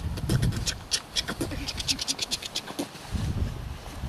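Vocal beatboxing: a quick run of sharp, hissing mouth clicks, about six a second, that stops about three seconds in.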